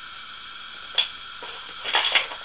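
Metal clicks of a Mauser-action carbine's bolt being put back into the receiver, with a headspace gauge held under the extractor: one sharp click about a second in, then a quick cluster of clicks near the end.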